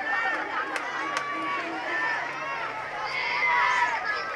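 Stadium crowd talking and shouting, many voices overlapping, with a few sharp claps and the voices rising near the end.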